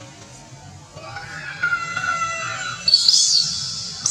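Background music with guitar, over a baby macaque crying. A pitched, wavering cry starts about a second in and turns to high-pitched screams near the end.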